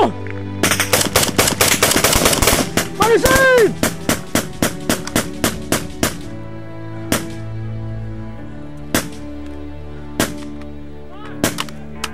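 Close small-arms gunfire: a fast burst of automatic fire about half a second in, then rapid shots a few a second until about six seconds, then single shots a second or two apart. A steady music bed runs underneath.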